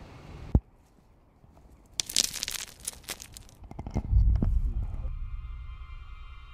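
A sharp click, a short hush, then about two seconds of dense crunching and crackling. A deep low rumble follows, and a sustained eerie music drone sets in near the end.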